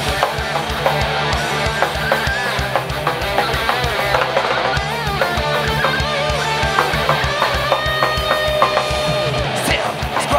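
Heavy metal band playing live: distorted electric guitars and bass over a drum kit with fast, continuous kick drum strikes, with held guitar notes in the second half.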